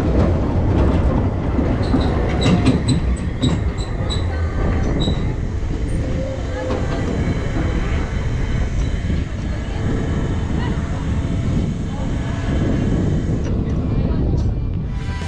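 Zamperla Air Force 5 suspended family coaster car running along its steel track: a steady rumble of wheels on the rail and wind. Between about two and five seconds in come a run of sharp clicks and short high squeaks.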